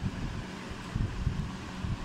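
Low rumble of noise on the microphone, with a few soft thumps, most likely from the phone being handled while filming.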